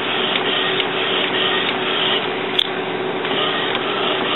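Epson WorkForce inkjet printer printing, its printhead carriage running back and forth with a steady mechanical whir and a few short ticks.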